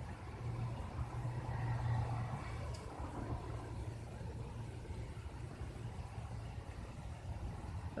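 Low, steady motor-vehicle engine hum, swelling during the first few seconds and then easing off.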